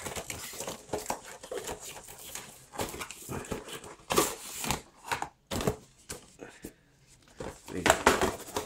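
A cardboard retail box being handled and opened: irregular scraping, rustling and clicks as its end flap is worked open and the inner packaging is slid out. The noise eases off for a couple of seconds near the end.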